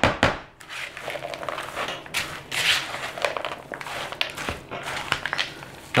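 Hands mixing shredded hash browns into a thick sour cream and cheese mixture in a large plastic bowl: irregular bursts of squishing and rustling, loudest right at the start.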